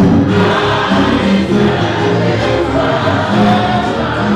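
Church choir singing a gospel song.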